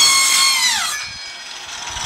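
Corded circular saw motor running at full speed with a high whine, then spinning down. The whine falls steadily in pitch from about half a second in and is gone after about a second.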